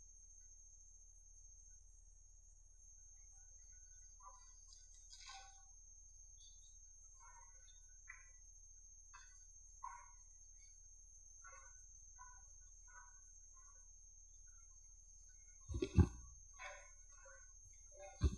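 Near silence: room tone with a faint steady hum, a few scattered faint small sounds, and one brief louder sound about two seconds before the end.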